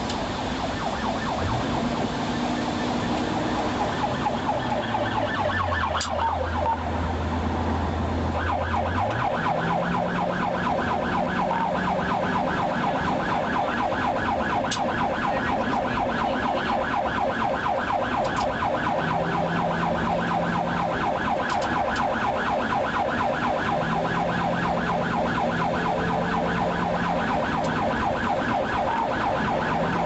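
Police squad car siren sounding continuously in a fast, rapidly cycling yelp, steadiest from about a third of the way in, heard from inside the car.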